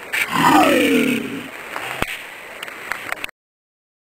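A person's loud vocal cry, falling in pitch over about a second, followed by quieter rustling with a few sharp clicks; the sound cuts off abruptly a little after three seconds in.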